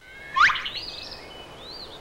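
Bird-like chirps: a quick rising whistle about half a second in, then a few short high chirps.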